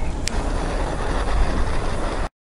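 Steady outdoor background noise with a heavy low rumble, with a short sharp click about a quarter second in.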